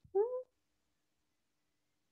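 A single short call with a rising pitch, about a third of a second long, near the start; the rest is near silence.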